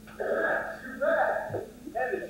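An actor's voice on stage, speaking two short phrases about half a second apart.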